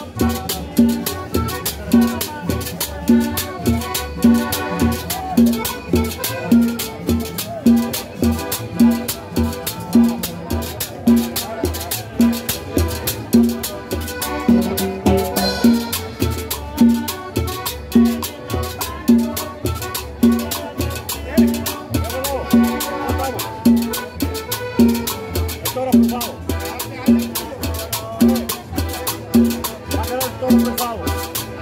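A live cumbia band playing: upright double bass, cymbal and hand percussion over a steady, even beat.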